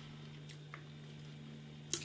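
Quiet room tone with a steady low hum, broken by a few faint clicks and one sharper click near the end.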